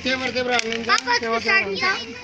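Several voices, children among them, chanting "haan haan haan" over and over in excited unison.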